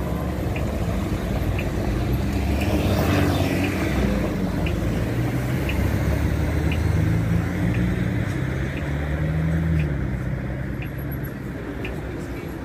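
Car engines running at low speed as cars pull out of a parking area and drive past close by, the engine note rising and getting louder in the middle. A short high tick repeats about once a second.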